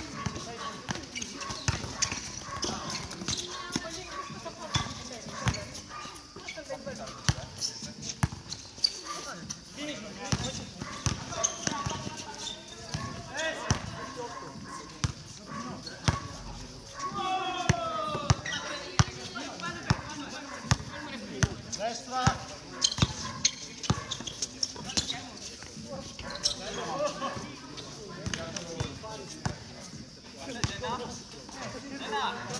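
Basketball bouncing and being dribbled on a hard court during a game: repeated sharp bounces throughout, with players' voices calling out.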